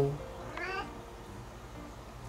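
A cat gives one short meow about half a second in.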